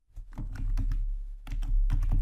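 Typing on a computer keyboard: a quick run of keystrokes typing out a word, clicking most densely near the end.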